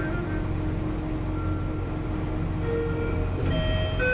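Lift car travelling, heard from inside the cabin: a steady low hum with faint tones over it. Several clearer tones sound near the end as the doors start to slide open.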